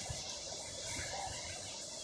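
Faint, steady wash of surf and breeze on an open beach, with no distinct events.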